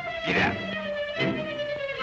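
Cartoon orchestral score: a held, meow-like note slowly sliding down in pitch over a pulsing low accompaniment, with a short up-and-down swoop about half a second in.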